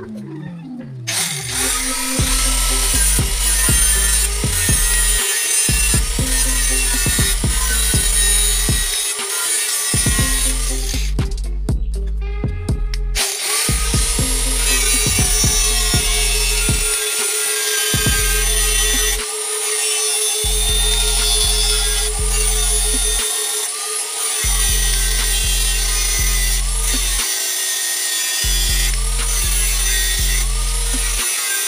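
Electric angle grinder running and grinding into metal, with a steady motor whine, mixed with background music that has a heavy bass beat.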